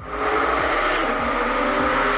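Porsche 911's flat-six engine running loud and steady as the car drives toward the camera, its note easing slightly near the end.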